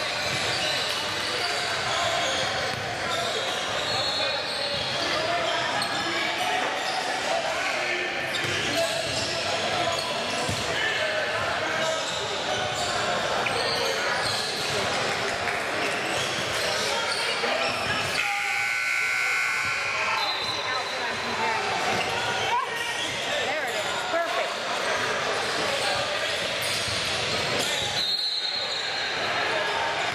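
Indistinct voices of players and spectators in a large gymnasium, with a basketball bouncing on the hardwood court.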